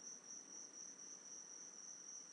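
Near silence except for a faint, steady high-pitched trill that pulses slightly, over low hiss.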